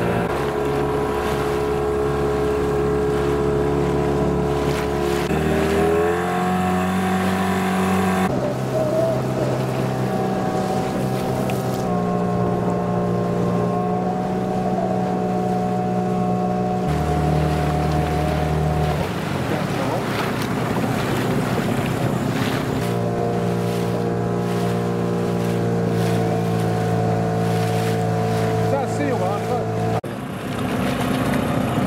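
Outboard engine of a RIB running under way across the bay, its pitch stepping up and down several times as the throttle changes.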